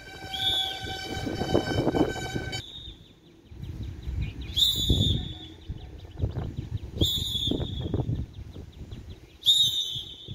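A steady horn sounds for about the first two and a half seconds and then stops. A bird repeats a short, high call every two seconds or so.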